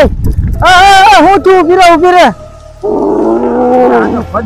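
A loud, wavering vocal roar, three long cries with a shaky pitch, then a lower, rougher growl near the end.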